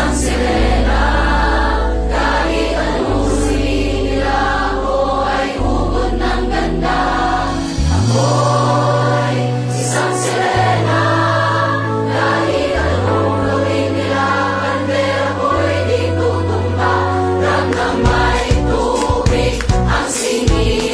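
Several hundred voices singing together as a mass choir over music with held bass notes that change every two or three seconds.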